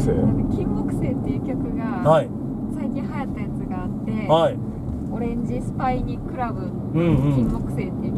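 Steady low road and engine rumble inside a moving car's cabin, with a few brief quiet vocal sounds from the passengers.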